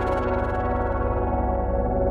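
A sustained chord of many steady tones, with a fast pulsing low end, processed through the Tonsturm FRQ.Shift frequency-shifter plugin with its delay effect feeding back into the shifter and routed to the feedback path only. Faint high sweeps die away in the first half second.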